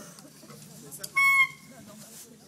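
A single short, high-pitched honk, held steady for about a third of a second a little past one second in and dipping slightly in pitch as it stops.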